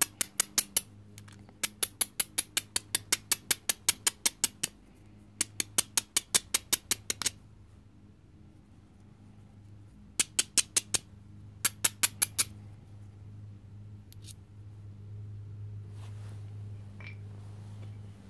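A stone drill preform's edge being rubbed back and forth with a hand-held abrading stone, in quick rasping strokes of about six a second. The strokes come in several runs of one to three seconds and stop about twelve seconds in, leaving only a few faint handling sounds.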